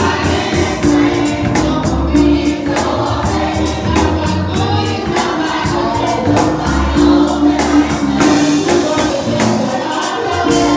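Gospel choir singing over a band, with sustained organ chords, a bass line and a steady drum beat.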